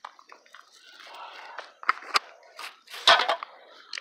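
Rustling of a paper bag and a soft cooler bag being handled, with a few sharp clicks about two seconds in and a louder knock about three seconds in as the bottle and can inside are moved.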